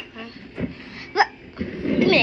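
A child's voice making wordless vocal sounds, with a short, sharp vocal sound about a second in.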